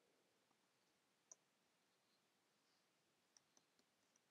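Near silence broken by a few faint clicks of typing on a computer keyboard: one about a second in, then a quick cluster near the end.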